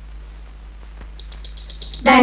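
A small bird chirping in a quick run of short, high chirps, about ten a second, starting a little past halfway, over the old film soundtrack's steady low hum.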